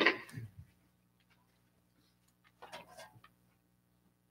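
A hushed room with a faint steady hum, broken by a short sharp noise at the very start and a softer patch of small rustling noises about two and a half seconds later.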